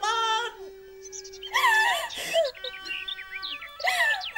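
Khmer Lakhon Basak opera: a wavering sung or wailed voice with held notes from the accompanying instruments. A brief phrase opens, a single note is held, a bending vocal phrase comes about halfway through, and near the end several steady notes carry small chirping ornaments.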